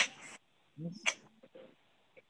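A woman's voice close to a handheld microphone, heard through a video call: a few short, breathy, hissing utterances rather than clear words, with gaps between them.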